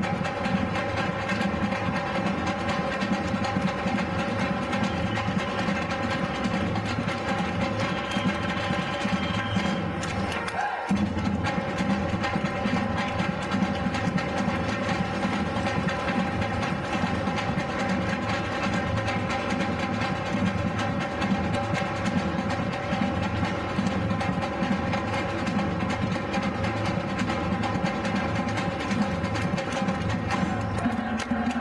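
Batucada drum ensemble playing a steady, driving samba rhythm: big bass drums, snare drums and other stick-beaten drums sounding together. The bass drops out briefly about eleven seconds in before the groove carries on.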